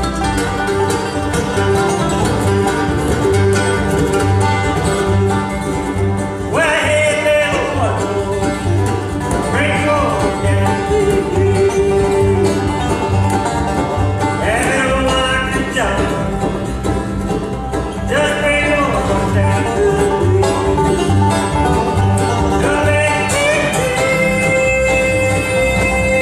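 Live bluegrass band playing: banjo and acoustic guitar picking over an upright bass that keeps a steady beat. A lead line swoops sharply upward every few seconds.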